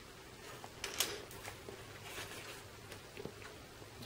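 Quiet paper-craft handling: the backing peeled off a piece of double-sided adhesive and a cardstock tag moved onto a card, with a few soft ticks, the loudest about a second in.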